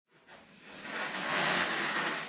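A whoosh of hissing noise that swells up over about a second and then holds, leading into the intro.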